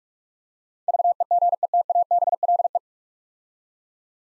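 Morse code at 45 words per minute: a single steady electronic tone keyed rapidly on and off for about two seconds, starting about a second in, sending the whole nine-letter word VEGETABLE.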